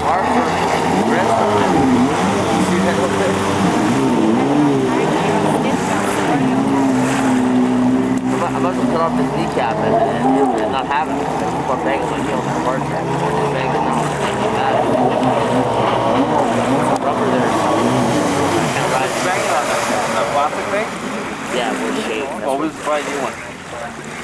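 Two-stroke jet ski engines running, their whine rising and falling in pitch with the throttle.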